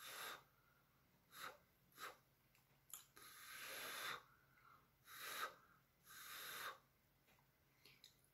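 Faint puffs of breath blown out through the mouth onto wet acrylic paint on a tile: about seven short breaths, with a longer one about three seconds in.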